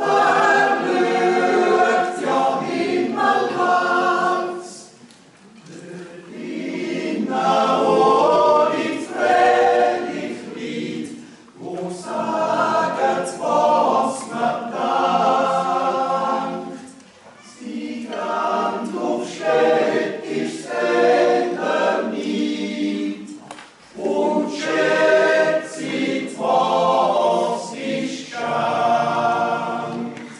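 Swiss yodel club choir singing a Jodellied unaccompanied in close harmony. The phrases last about six seconds, each followed by a brief pause for breath.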